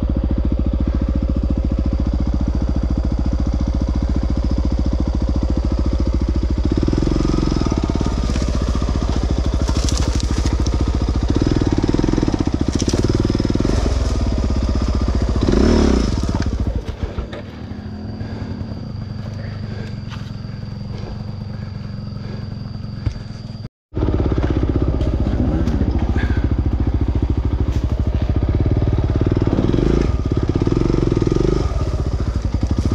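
Dirt bike engine working under load on rough ground, with repeated bursts of throttle. A little past halfway it falls to a quieter, steadier run for about six seconds, then, after a sudden break in the sound, it is back at full working level.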